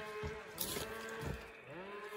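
An engine running at a steady pitch, its speed dipping briefly and picking back up near the end, with a few soft knocks.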